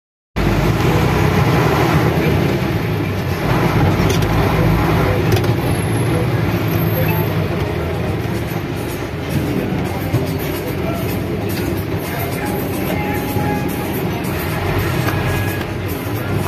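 Vehicle running in slow city traffic, heard from inside the cabin: a steady low engine hum under street and traffic noise, with music playing along.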